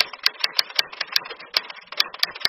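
Typing sound effect: a rapid, even run of keystroke clicks, about five a second.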